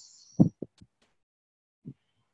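A brief breathy exhale, then a few soft, dull thumps of a body moving on a yoga mat. The loudest thump comes about half a second in, and one more comes near the end.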